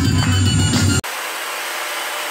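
Loud music with a deep, heavy bass, cut off about a second in by the steady rushing noise of a hair dryer blowing.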